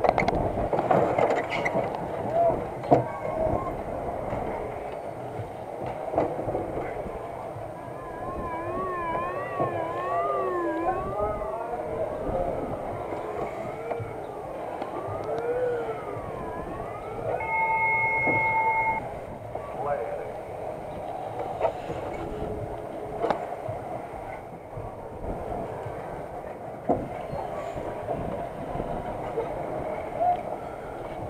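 Spider amusement ride running, heard from a rider's seat: a steady mechanical rumble with clanks and people's voices around it. From about eight seconds in, a siren-like tone warbles up and down for several seconds, and near the middle a steady two-note beep holds for about a second and a half.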